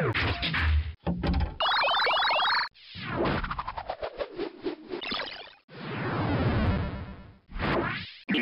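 A robot's synthesized sound effects while it analyses a pill: a string of short electronic passages with brief gaps between them, including a run of quick rising chirps and a long falling sweep.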